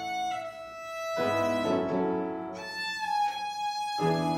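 Violin playing slow, held notes, accompanied by upright piano chords in the lower register that come in about a second in and again near the end.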